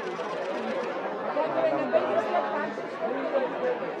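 Overlapping chatter of many voices, with no single voice standing out.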